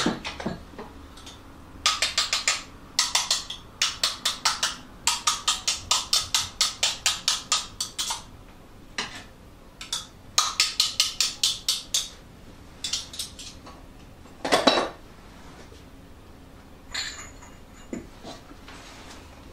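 Spatula scraping and knocking against a metal mixing bowl as glossy whipped egg-white meringue is worked out into the cake batter, in quick runs of sharp taps about four a second, with one longer, louder scrape about three-quarters of the way through.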